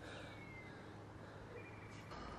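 Faint riverside ambience: a steady low hum under two thin, faint bird whistles, the first sliding down in pitch, the second short and level near the end.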